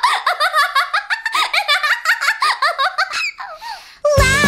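High-pitched cartoon female voice giggling in a quick run of short laughs, each rising and falling in pitch, about four or five a second, trailing off near the end.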